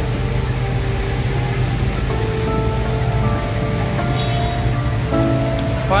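Background music with held, slowly changing notes, over the steady noise of heavy rain.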